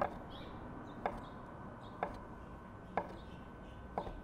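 A knife slicing rolled egg-noodle dough, its blade knocking on a wooden butcher-block board with each cut: five sharp knocks, about one a second.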